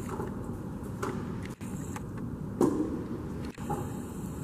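City street ambience: a steady low hum of traffic noise, with a brief louder sound about two and a half seconds in.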